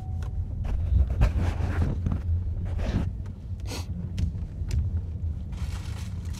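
Low, steady road and engine rumble inside a moving car's cabin, with a few brief rustling noises.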